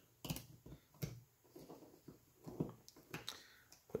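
Faint, irregular clicks and taps of hands handling a metal gear-and-bearing drive stack and 3D-printed plastic parts while a belt is fitted onto the stack.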